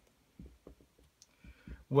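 Dry-erase marker writing on a whiteboard: a few faint, short taps and scratches of the marker tip as a letter and an arrow are drawn.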